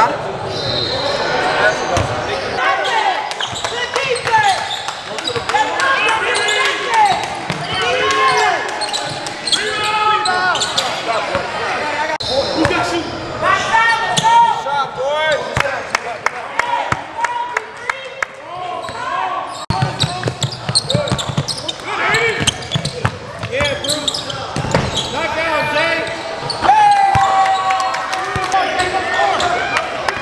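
Basketball game sound in a gym: a ball bouncing on the hardwood court with repeated knocks, mixed with players' and spectators' voices calling out, all echoing in a large hall.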